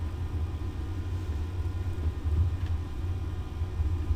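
Steady low rumble of background noise, with no change or distinct events through the pause.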